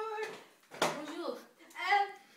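Young people's voices: short, high-pitched vocal sounds without clear words, with a sharp outburst a little under a second in and another call near the end.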